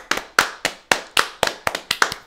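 Two people clapping their hands, about four claps a second, slightly out of step with each other.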